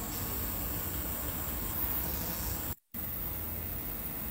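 Steady hiss of background noise with no distinct event. It is broken by a brief dead-silent gap a little under three seconds in.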